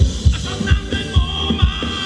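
Live Thai ramwong dance-band music with a steady kick-drum beat, about two beats a second, under sustained melody lines.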